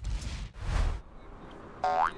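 Cartoon sound effects: two short swells of noise within the first second, then a brief pitched tone near the end, over quiet background music.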